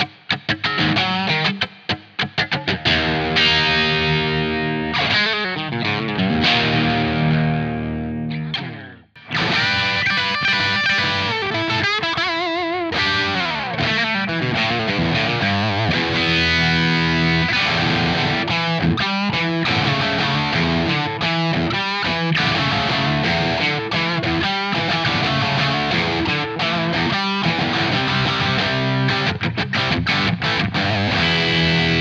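Electric guitar through a J. Rockett HRM v2 overdrive set for a classic-rock tone: low gain with boosted upper mids, a clear, percussive crunch. A Stratocaster plays stop-start riffs and ringing chords for about nine seconds. After a brief break, a Gibson Les Paul with humbuckers takes over with continuous riffs.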